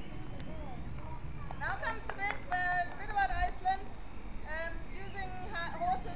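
Indistinct voices of people talking, starting about a second and a half in, over a steady low background rumble.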